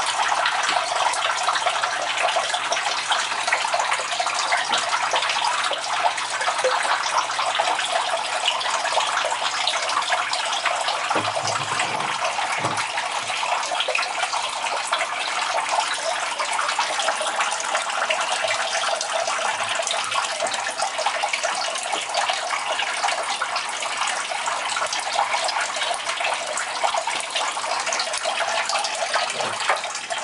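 Steady splashing of water from a turtle tank's filter outflow, running without a break, with a few brief low bumps a little before the middle.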